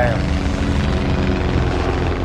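Antonov An-2 biplane's engine and propeller running loudly: a dense, steady rush with a low, fast throb.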